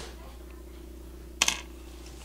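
A quick double click of a small hard makeup item knocked against the wooden tabletop, about one and a half seconds in, over quiet room tone with a low hum.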